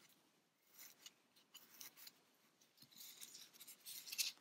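Faint, scattered rustling and scratching of polyester fiberfill being pushed into a crocheted amigurumi body with a crochet hook, with the yarn piece rubbed between the fingers.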